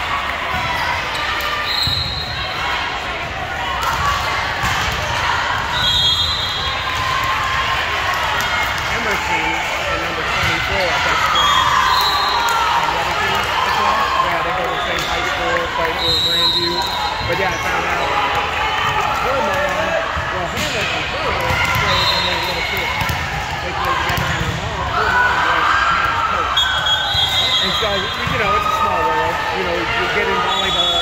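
Volleyballs bouncing and being hit in a busy gym hall, over many players and spectators chattering and calling out. Short high-pitched tones cut through every few seconds.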